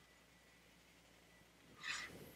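Near silence with faint room tone, broken near the end by one short, soft breath.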